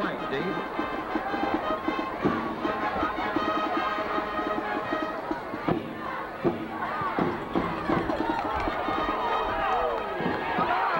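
Band music with held brass-like notes and a steady drum beat, heard over a stadium crowd; shouting and cheering from the crowd build over the last few seconds.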